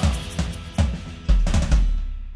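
Band's closing hits on drum kit and bass: about six hard strikes in quick succession, the last three heaviest and deepest. The sound then rings out and fades as the song ends.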